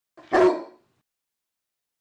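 A single short canine yip, about half a second long, with a faint sound just before it.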